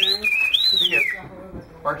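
R2-D2 astromech droid's electronic whistles: a quick upward chirp, a short steady tone, then a high whistle that rises and falls away, stopping about a second in.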